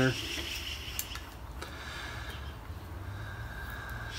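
Quiet handling of a metal distributor being turned by hand, with one light click about a second in, over a steady low hum.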